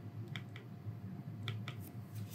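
Faint, light ticks of a stylus tapping and writing on a tablet screen, about five scattered clicks over a low steady hum.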